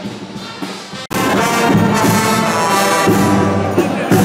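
Loud brass band music, with trombones and trumpets, cutting in suddenly about a second in after a quieter hum of crowd noise.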